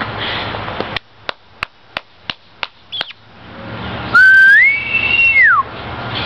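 A person whistling to call a dog back: one long whistle about four seconds in that rises, holds, then drops away. Before it comes a run of about six sharp clicks, roughly three a second.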